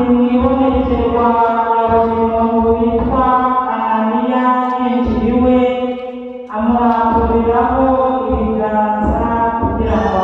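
Chanted religious singing: a voice holding long notes over a steady low drone, breaking off briefly about six and a half seconds in.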